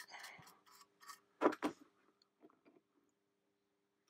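A paintbrush stroking a weathering wash along the edge of a plastic model wagon body, a soft scratchy brushing, followed about a second and a half in by two quick light clicks and a few faint ticks of handling.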